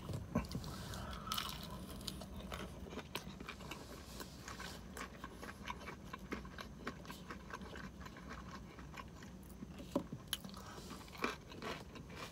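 A person chewing a bite of breaded fried chicken tender close to the microphone: soft, irregular crunching and wet mouth clicks, with two sharper crunches near the end.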